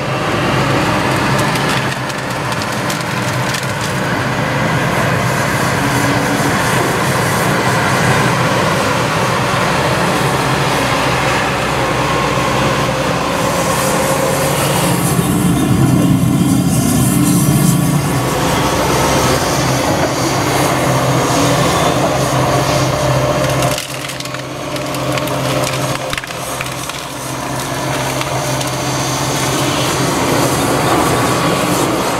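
Caterpillar 330F excavator's diesel engine running steadily under hydraulic load while its grapple tears out a thuja hedge, with wood cracking and splintering throughout. The engine is louder for a few seconds about halfway through.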